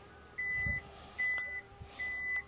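Toyota Vellfire's power tailgate warning buzzer beeping while the powered tailgate closes: one high steady tone, repeating about every 0.8 seconds.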